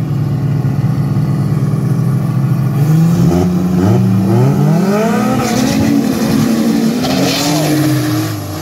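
Two drag cars' engines running steadily at the start line, then revving up about three seconds in and accelerating hard off the line, their pitch rising and falling.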